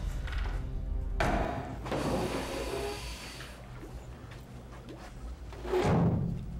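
Tense horror film score: a low sustained drone, with a noisy swell about a second in and another louder swell near the end.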